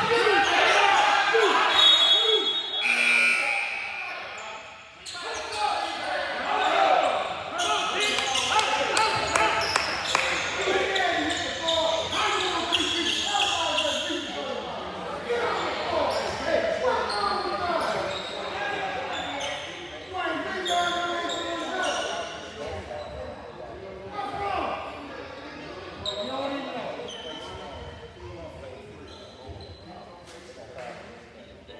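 Basketball bouncing on a hardwood gym floor, with voices calling out and echoing in the big hall. A brief high tone sounds about two seconds in.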